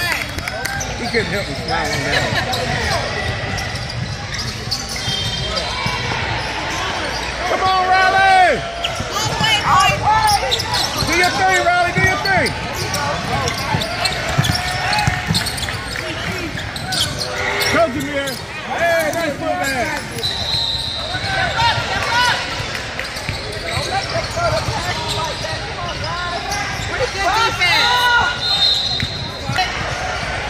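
Basketball game sounds echoing in a large gym: a ball bouncing on the hardwood court amid scattered shouts and chatter from players and spectators.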